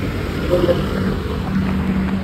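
Steady low hum of a running vehicle engine, with faint voices in the background.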